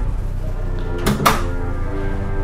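Background music with sustained notes, and about a second in a short knock of a restroom door being pushed open.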